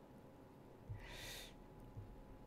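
A single short breath close to the microphone about a second in, against near-silent room tone.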